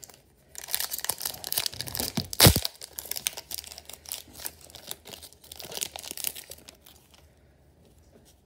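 Foil wrapper of a hockey card pack crinkling and being torn open by hand, with one loud crack about two and a half seconds in. The crinkling dies away near the end.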